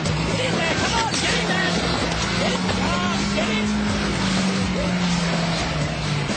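A car engine held at high revs over a rough rushing noise. Its pitch climbs slightly about two seconds in and drops back near the end, with short squeals scattered through it.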